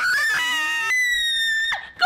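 A boy and a young woman screaming together, startled. One high scream is held steady over a lower one that wavers; both start suddenly and cut off just before the end.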